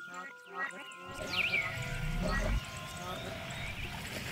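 Layered sound collage: the tail of a spoken voice over sustained musical tones, a few quick high chirps, then a steady even hiss.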